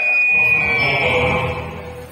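A sustained high-pitched electronic tone over the stage sound system, with a fainter lower note beneath, fading out after about a second and a half.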